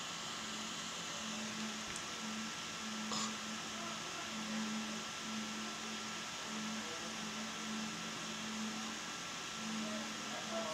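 Low electronic tone from a phone EVP app, breaking on and off at an irregular rhythm over a steady hiss and a faint, steady high whine.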